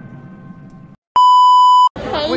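A marching band's last held chord fading away, then a moment of silence and a loud, steady electronic beep of just under a second that starts and stops abruptly.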